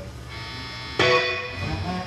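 Live rock band playing on stage: sustained chord tones, then a loud struck chord about a second in that rings on.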